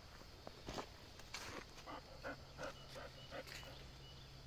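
A run of short animal calls, about three a second for a couple of seconds, faint over quiet outdoor ambience.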